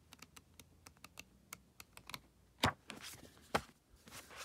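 Pages of a thin paperback flicked through one after another, a quick run of light paper clicks, then two louder knocks in the second half.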